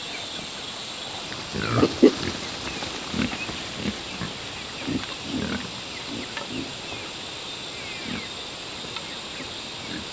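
Pigs grunting: a loud cluster of grunts about two seconds in, then shorter grunts every half second or so for several seconds, fading out near the end. A steady high thin tone runs underneath.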